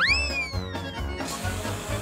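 A cartoon whistle sound effect that swoops up sharply and slides slowly down over about a second, over background music; then the hiss of whipped cream spraying from an aerosol can.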